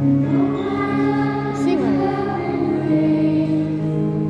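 Children singing a worship song into microphones over a backing accompaniment of sustained, steady chords; the voices come in shortly after the start.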